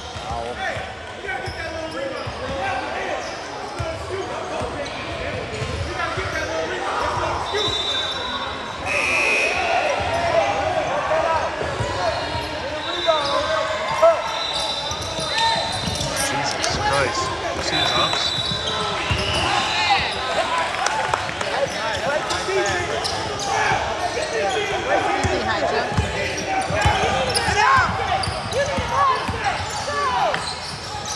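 Many voices talking and calling at once across a large, echoing gym, with a basketball bouncing on the hardwood court.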